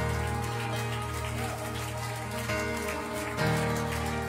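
Live church worship band playing a slow, sustained passage: held keyboard chords over bass, with a faint hiss-like wash on top. The chord changes and swells slightly near the end.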